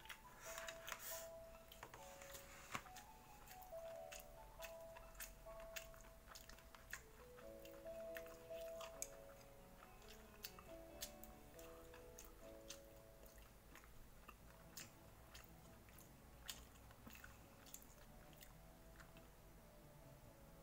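Quiet background music, a simple melody of single held notes, under scattered small clicks and the mouth sounds of someone chewing food.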